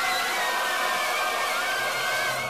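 A steady rushing noise, even across all pitches, with faint thin high tones running through it. It holds at one level throughout, part of the trailer's soundtrack.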